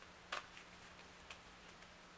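Playing cards being handled in the hand: one sharp click about a third of a second in, then a few lighter ticks later on, over a faint steady hum.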